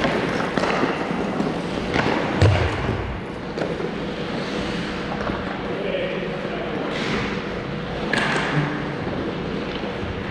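Ice hockey being played: skates scraping on the ice under the hall's steady noise, with a few sharp clacks of sticks and puck and a heavier thud about two and a half seconds in. Players' voices call out now and then.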